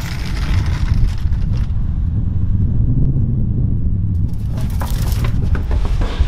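Hard dolly wheels rolling over a concrete sidewalk under a heavy wooden cabinet: a steady low rumble with light rattling at the start and again near the end.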